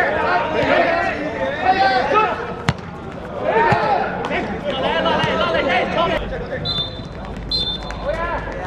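Players shouting over a football match, with one sharp ball kick about a third of the way in. Near the end a referee's whistle gives two short high blasts, the start of the full-time whistle.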